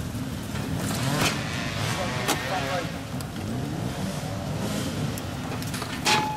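Motorcycle engines running steadily in the background, a continuous low rumble, with a few sharp clicks and people talking.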